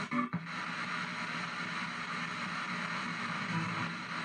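P-SB7 spirit box radio sweeping down the FM band, giving a steady wash of static and chopped-up scraps of station audio, music among them. A fragment in it is taken by the operator for a spirit voice saying "I'm trying".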